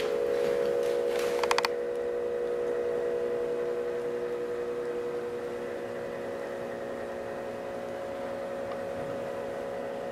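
A steady hum of several held tones, with a quick rattle of clicks about one and a half seconds in.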